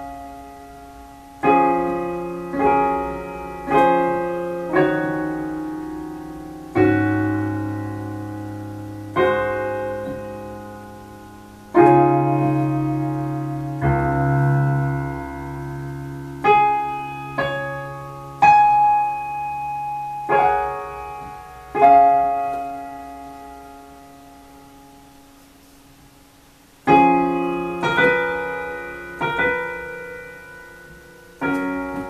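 Digital keyboard playing a grand piano sound: a slow ballad of chords and single notes, each struck and left to ring and fade. Near the end one chord is held and dies away for several seconds before a quicker run of notes starts.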